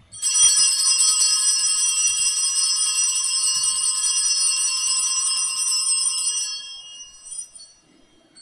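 Altar bells (sanctus bells) ringing at the elevation of the chalice after the consecration. A bright, shimmering ring of many high tones starts suddenly, holds for about six seconds, then fades out.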